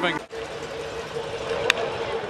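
Ballpark crowd murmur, then a single sharp crack of a bat meeting a pitched ball about a second and a half in, as the batter lines it to left.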